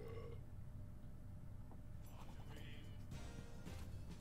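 Slot game's background music playing quietly, with a brief soft flourish about two seconds in.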